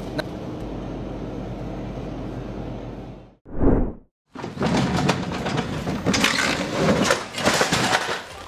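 A steady hum, a short loud burst about three and a half seconds in, then, after a brief silence, a long noisy clatter and crash as a pallet jack and its load of sacks tip off a truck's tail.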